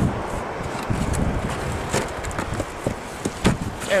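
A blue plastic tackle box being opened and rummaged through by hand for bait mackerel, giving a few short plastic knocks and clicks, most of them near the end, over a steady low wind rumble on the microphone.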